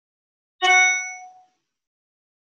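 A single bright ding, a pitched chime with several clear overtones, that starts sharply about half a second in and fades away within a second.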